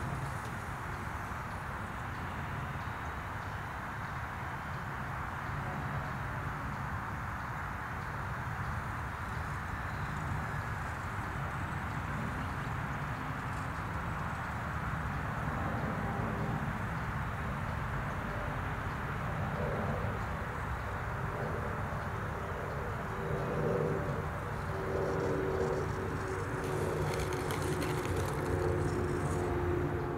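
Steady outdoor rushing noise with no clear single source, with a few faint tones in the second half.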